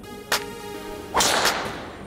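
A golf driver swung and striking a teed ball a little over a second in: a quick rising swish into a sharp crack that fades away. A short click comes about a third of a second in, and faint background music runs underneath.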